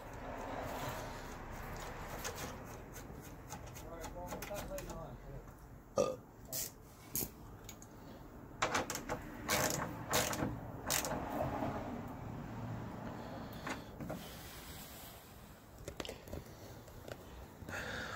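Scattered sharp metal clicks and taps of a hand tool and fender-bolt hardware as a fender bolt with a titanium washer is worked in. They come in a cluster from about a third of the way in to just past the middle, with a few more later, over a faint low murmur and distant talk.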